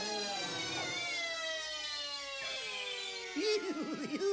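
Cartoon sound effect: one long whistle-like tone sliding slowly down in pitch, the cue for characters being flung far off. Near the end it gives way to bouncy, quick notes.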